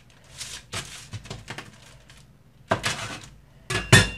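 Metal dough cutter scraping and tapping on a metal baking sheet as bread dough is cut and handled, with a sharp knock near the end that leaves a brief metallic ring.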